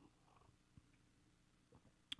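Near silence: room tone with a faint steady low hum and a few barely audible small sounds.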